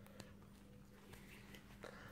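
Near silence: room tone with a faint steady hum and a single faint click.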